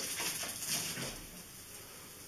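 Yorkshire terriers playing, with a quick run of short yips and play noises that dies away after about a second.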